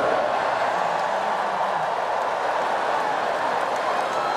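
Large audience cheering and laughing, a steady wash of crowd noise with no single voice standing out.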